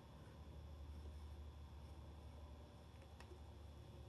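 Near silence: a faint steady low hum, with one faint click about three seconds in as the tone arm's stylus is set down on the spinning record.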